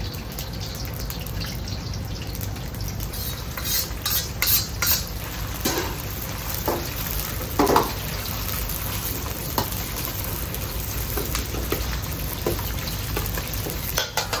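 Beaten egg sizzling in hot oil in a carbon-steel wok over a gas wok burner, over the burner's steady low rumble. A metal ladle stirs and scrapes, knocking against the wok several times between about four and eight seconds in.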